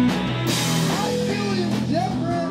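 Live rock band playing: two electric guitars over a drum kit, with the cymbals washing in about half a second in.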